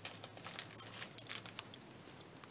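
Clear plastic packaging of craft packets crinkling as they are handled, in a soft run of irregular small rustles and clicks that thin out near the end.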